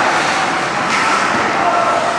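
Steady ice-rink din in a large echoing arena: skates on the ice and spectators' voices, with a short scrape about a second in.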